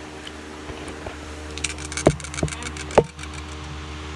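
Handling noise close to the microphone: a brief patch of rustling, then three sharp knocks, the last about three seconds in and the loudest, over a steady hum.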